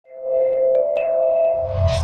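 Electronic music of a TV channel's intro ident: held synth tones fade in, with two short high pings about a second in, then build to a rising whoosh and a deep bass swell near the end.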